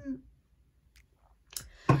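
A drink sipped from a wine glass, with small mouth clicks and a swallow. Near the end comes a sharp mouth click and an intake of breath.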